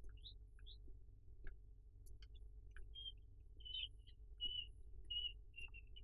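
Faint, short high-pitched chirps repeating at irregular intervals, rising sweeps early on and steadier notes from about halfway, over a low steady hum with a few soft clicks.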